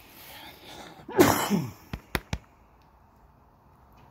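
A man sneezes once, about a second in, with a loud burst that falls in pitch. Three short sharp clicks follow within a second.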